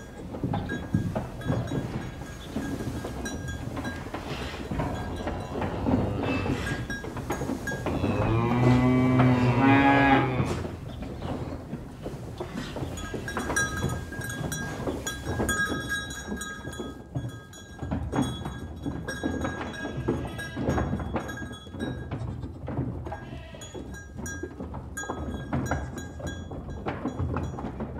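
Farm ambience with cattle: a cow gives one long, low moo about eight seconds in, the loudest sound. Around it are scattered knocks and short, repeated high tones.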